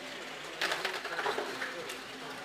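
Casino chips clicking and clattering as they are handled on a roulette table, in a quick run of sharp clicks that starts about half a second in and lasts over a second.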